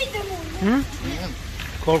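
A person speaking in short stretches over a steady low hum.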